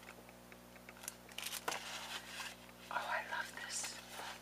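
Cellophane wrapping crinkling and paper cards rustling as they are handled, in short scattered bursts.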